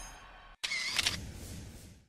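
The tail of an electronic intro tune fading out, then a short cut to silence and a brief sound effect that starts sharply just over half a second in and fades away with the animated logo.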